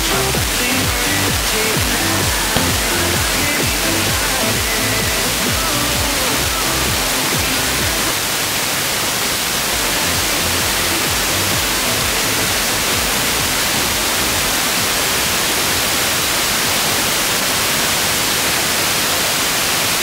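Car radio playing a weak, distant FM broadcast received by troposcatter: music with a beat through heavy static hiss for the first eight seconds or so. After that, steady hiss takes over and the music is only faint.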